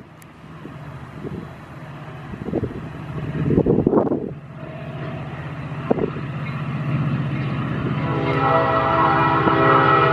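A locomotive-hauled commuter train running by with a steady low drone. Its horn sounds near the end as a chord of several tones.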